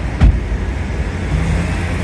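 Steady low rumble of road traffic and vehicles around a parking lot, with a single knock about a quarter second in.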